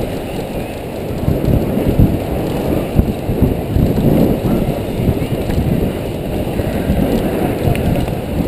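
Wind buffeting a helmet-mounted camera's microphone, mixed with a BMX bike's tyres rolling fast over a packed dirt track: a loud, rough rumble with a couple of sharper knocks about two and three seconds in.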